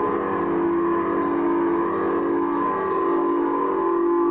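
Electric guitar and bass holding a steady, sustained drone through their amplifiers, several notes ringing together with no drums. The low end drops away about three seconds in.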